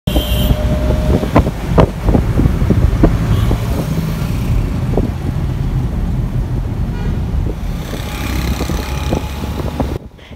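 Engine rumble and road noise inside a moving car in city traffic, with a few sharp knocks. A car horn sounds briefly near the start.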